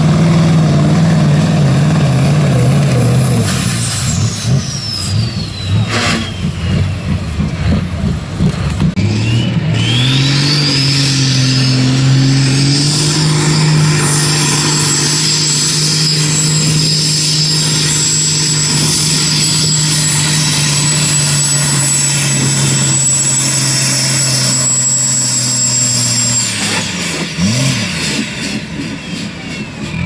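Heavy diesel truck engines at full throttle pulling a weight-transfer sled. The first engine holds high revs and then falls away with a high falling whistle. About ten seconds in a second truck's engine climbs to steady high revs under load with a high whistle above it, holds for about fifteen seconds, and drops off near the end.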